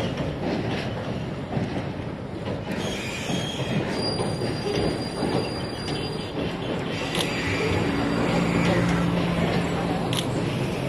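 Passenger train running across a steel-girder rail bridge with a continuous rumble, and from about four seconds in a thin, steady, high-pitched wheel squeal.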